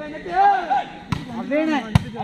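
A volleyball struck by hand: a light hit about halfway, then a sharp, loud slap of a spike near the end, among shouting voices of players and spectators.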